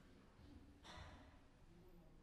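Near silence: concert hall room tone, with one faint, short breathy noise about a second in.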